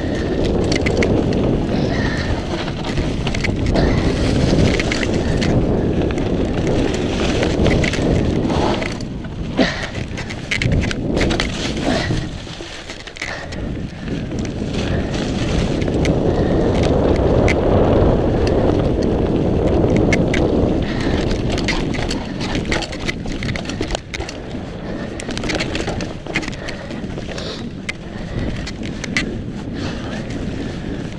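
Mountain bike tyres rolling fast over dry leaf litter and dirt on a downhill trail, mixed with wind rushing over the camera microphone and occasional sharp clicks. The rush eases around twelve seconds in, then builds again.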